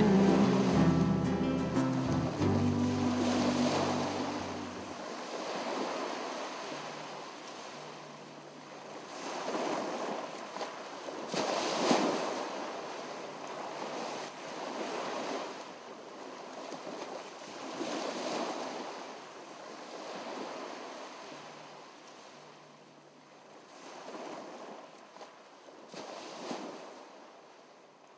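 Music dies away over the first few seconds, leaving ocean waves washing in and out, one swell every two to three seconds, slowly fading.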